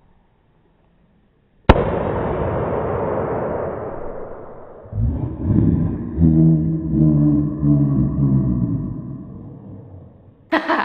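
A big latex balloon bursting with one sharp bang about a second and a half in, after a moment of dead silence. The bang trails off into a long rumbling decay like an explosion sound effect, followed by a low droning hum that fades away.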